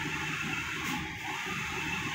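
Steady low background noise with no distinct event: room tone.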